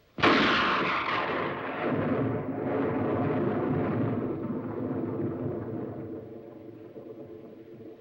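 A single loud blast that starts sharply about a quarter-second in, followed by a dense rumble that holds for several seconds and then fades out.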